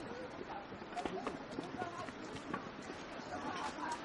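Footsteps of a group of hikers on a stone trail, with scattered voices nearby.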